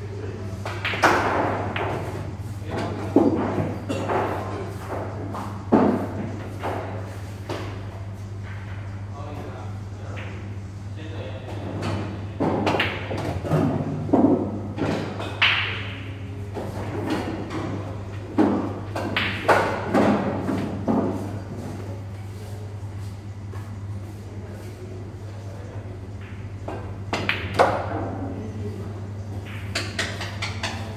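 Pool balls being struck and clicking together in a large hard-walled hall: a scatter of sharp clicks and knocks, with voices in the background and a steady hum beneath.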